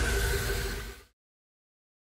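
The tail of a bass-heavy electronic music sting for the channel's end card, fading and stopping about a second in, followed by silence.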